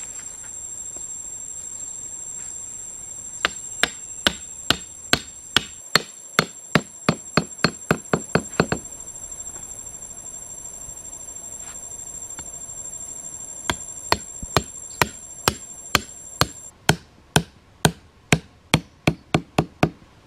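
A small hatchet striking the top of a wooden stake to drive it into the ground, in two runs of sharp knocks about two to three a second, the first from about three to nine seconds in, the second from about fourteen seconds on.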